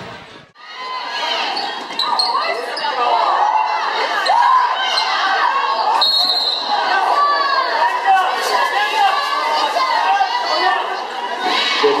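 Basketball game sounds in a large gym: many spectators' voices shouting and cheering over the ball bouncing on the court. The noise comes in about half a second in and stays steady.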